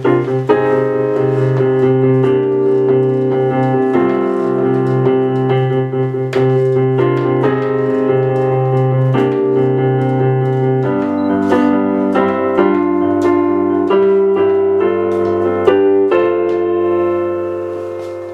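Nord Electro 2 stage keyboard playing a solo instrumental song intro: sustained chords over a low bass note, changing every second or two, with the bass moving lower about eleven seconds in. It grows quieter near the end.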